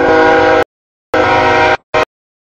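CSX freight locomotive's air horn sounding a chord at the grade crossing, in two blasts and a short third one near the end, each cut off abruptly into silence.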